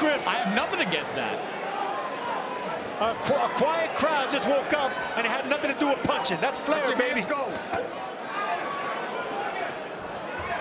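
Ringside sound of a live professional boxing bout: voices shouting from the corners and crowd, with scattered sharp thuds of punches landing.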